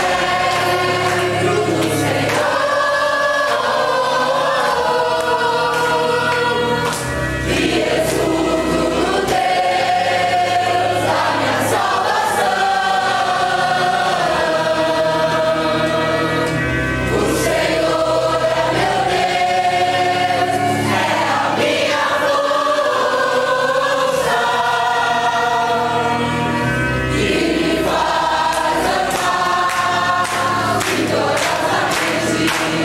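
Congregation singing a worship song together, over sustained low bass notes that change every few seconds.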